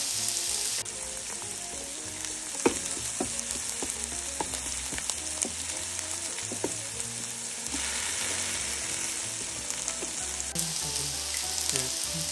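Chopped onion, garlic, scallion and chili sizzling steadily in hot oil in an electric multicooker pan, stirred with a wooden spatula that clicks and scrapes against the pan several times.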